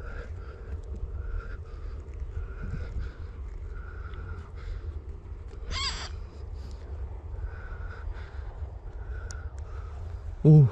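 Gloved hands scraping and pulling at loose soil inside a field-rat burrow, over a steady low rumble of wind on the microphone. About six seconds in, a single short, high-pitched call.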